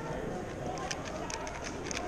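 Plastic speedcube being turned quickly during a solve: a run of short, light clicks at uneven spacing, over a murmur of voices.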